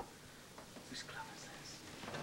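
A faint whispering voice in short soft phrases, with a light click about a second in.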